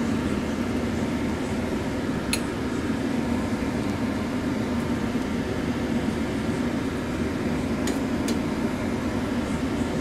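Steady rushing hum of a kitchen stove at work under a pot of simmering bamboo shoots, with a light click about two seconds in and two more about eight seconds in as a metal mesh strainer touches the steel pot.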